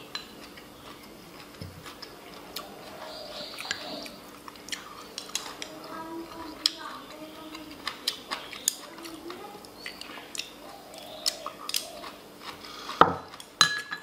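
Eating at the table: utensils clicking and tapping on ceramic dishes, with crunching as crisp boneless chicken feet and sour bamboo shoots are chewed. Short sharp clicks come on and off, the loudest near the end.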